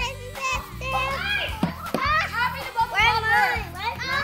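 High children's voices chattering and calling out over background music with a steady low bass line.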